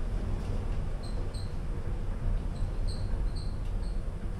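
Morris Vermaport passenger lift car travelling down its shaft: a steady low rumble, with about half a dozen short high-pitched squeaks spread through it.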